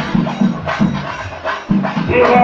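Singari melam percussion: chenda drums and cymbals beating a fast, steady rhythm of several strokes a second.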